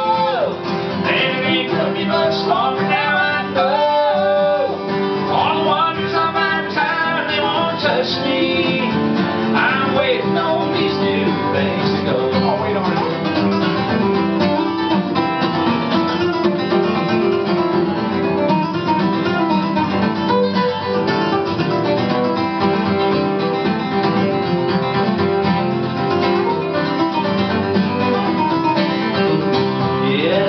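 Instrumental break in a live country song: an acoustic guitar strums a steady rhythm while a second player's plucked melodic lead, with bent notes, runs over it.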